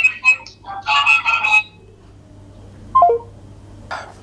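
A voice talking over a phone's loudspeaker for about the first second and a half, then a short falling vocal sound about three seconds in.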